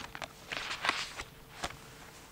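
Faint rustling of paper handled on a desk, with a few short, light clicks and taps scattered through.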